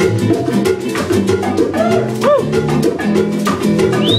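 A small live band playing Latin-flavoured world music: acoustic guitar, upright bass and hand percussion, with quick, evenly spaced percussion strikes over a walking bass line.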